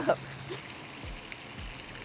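Insects trilling steadily outdoors, a rapid pulsing high buzz. From about a second in, a run of short low pulses, about three a second, sounds beneath it.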